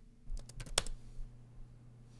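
A few keystrokes typed on a laptop keyboard, sharp clicks bunched in the first second, over a faint steady low hum.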